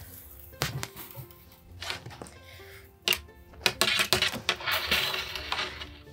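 Soft background music, with rustling and light clicks from a crocheted wing with wire in its edge being handled and bent.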